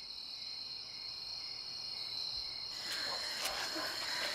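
Crickets trilling steadily at a high pitch in a night ambience; a little under three seconds in, the background thickens with faint clicks.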